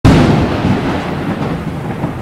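Thunder: a loud clap right at the start, then a rolling rumble that slowly fades.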